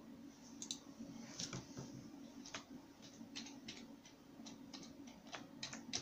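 Computer keyboard keys and mouse buttons clicking while a search term is typed: about a dozen sharp, irregularly spaced clicks, faint, over a low steady hum.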